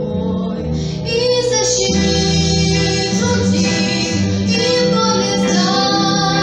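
A teenage girl singing a song solo into a microphone over instrumental accompaniment, her voice growing louder about a second in.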